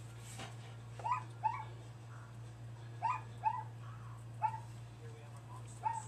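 Short, high yelps, heard about six times and mostly in pairs, over a steady low hum.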